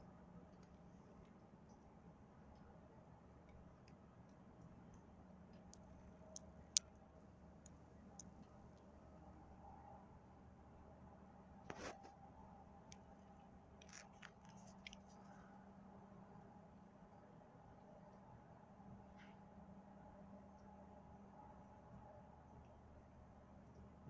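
Near silence: a faint steady low hum with a few short, scattered clicks, the sharpest about seven seconds in and another near the middle.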